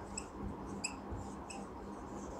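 Marker squeaking on a whiteboard while letters are written: three short, faint, high-pitched squeaks spread across the two seconds.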